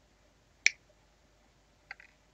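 Flush sprue cutters snipping a plastic miniature part off its sprue: one sharp snap about two-thirds of a second in, then a fainter snip near the end.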